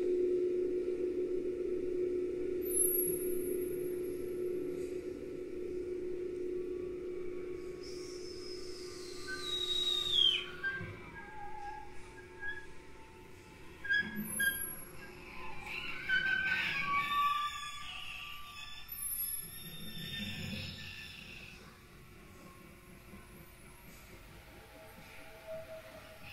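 Experimental chamber music built on whale sounds. A steady low held tone fades over the first ten seconds, then high whistle-like tones glide and chirp, one sliding steeply down in pitch, before the music fades out near the end.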